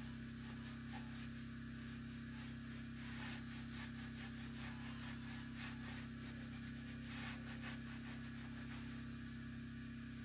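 Hand scrubber rubbing the inside of a wood stove's firebox in quick back-and-forth strokes, a steady scratchy scrubbing that grows more vigorous a few seconds in and again later on.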